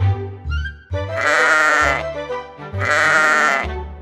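Sheep bleating twice, each call just under a second long, over background music.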